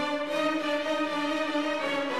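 Symphony orchestra playing long held notes in a steady, continuous passage.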